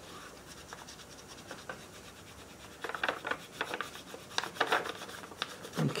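Fingertips scratching and rubbing on a sheet of paper: faint at first, then a run of short scratches over the last three seconds.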